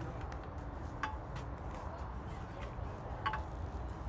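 Two short, light clinks about two seconds apart from a glass jar being set down and handled on a digital kitchen scale, over a steady low rumble of wind on the microphone.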